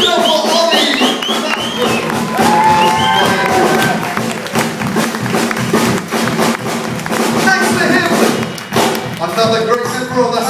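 Brass band playing live: saxophones and brass over a drum kit and sousaphone, with a quick run of high notes at the start.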